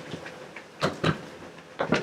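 Light knocks of parts being handled on a bench board as a finned regulator rectifier is moved aside and a smaller one is set down: two short clicks about a second apart.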